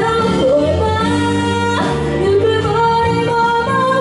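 A woman singing a pop song live into a handheld microphone over amplified instrumental accompaniment.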